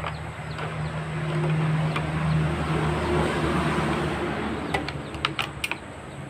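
A passing vehicle's engine hum swells and fades. Near the end come a few sharp clicks as the plastic fairing panel of a Honda CBR150 is pulled free of its clips.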